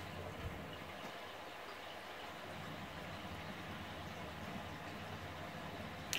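Faint, steady running noise of an aquarium: air bubbling up from an airstone, with a low hum from the tank's equipment.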